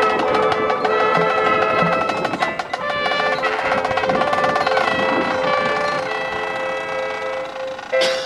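Marching band playing: brass and woodwinds sounding sustained chords over rapid drum and percussion hits.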